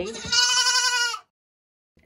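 A mini Nubian goat kid (doeling) gives one high, wavering bleat about a second long, which cuts off suddenly.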